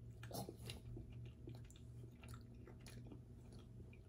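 Faint chewing of soft date and cashew bites, a scatter of small, quiet mouth clicks over a steady low hum.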